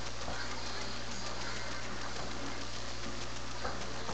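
Steady hiss with a low electrical hum: the background noise of a cheap webcam microphone left recording in an empty room, with a couple of faint knocks.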